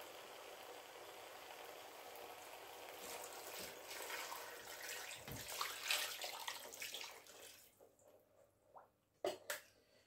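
Water poured from a plastic jug into a pot over raw turkey wings, splashing for about four seconds in the middle after a faint steady hiss, then fading out. A couple of light knocks near the end.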